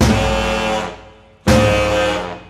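Jazz trio of drums, tenor saxophone and trombone playing loud repeated ensemble hits: one near the start and another about a second and a half in. Each sounds a chord that fades away before the next.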